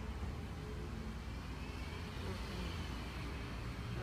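Distant road traffic: a steady low rumble, with a faint whine that rises and falls in pitch in the second half.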